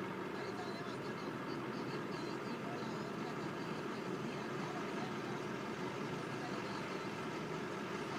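A vehicle engine running steadily, a low even rumble with no change in pitch or level.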